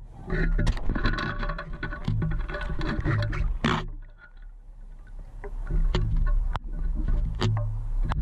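Shells and gravel clicking and rattling against a metal sand scoop's mesh as a hand sifts through it under water, with music underneath.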